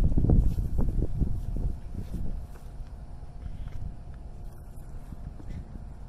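Wind buffeting the microphone outdoors: an irregular low rumble, loudest in the first second and a half, then easing off.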